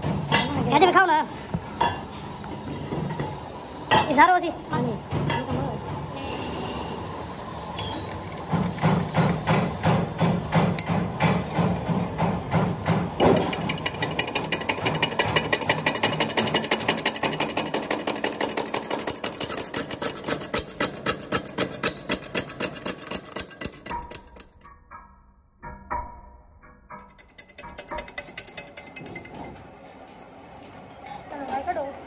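Lathe cutting the flange face of a cast-iron pump casting, with a rhythmic knocking several times a second. The knocks come from an interrupted cut, the tool striking the metal once each turn. The cutting stops briefly near the end, then resumes more lightly.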